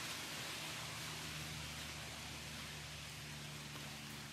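Faint, steady hiss of outdoor background noise with a low hum beneath it, and no sudden events.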